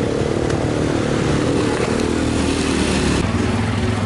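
A motor vehicle engine running close by, a steady pitched drone that thins out about three seconds in.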